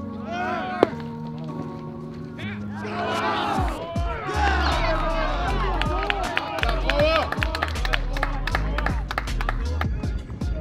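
Background music with a vocal line; a deep bass and a quick ticking beat come in about four seconds in. A single sharp crack sounds just under a second in.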